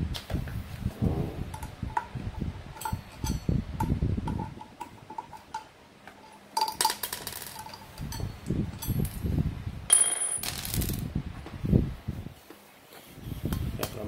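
Small metal clicks and clinks as the loosened brake-disc bolts are worked out of a scooter's rear wheel hub by hand, with knocks of handling. A brief high metallic ring sounds about ten seconds in, and the disc comes off the hub near the end.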